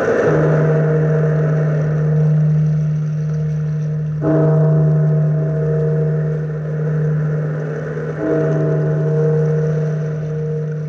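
A large bell tolling slowly, struck about every four seconds. Each stroke rings on with a low hum that carries through to the next.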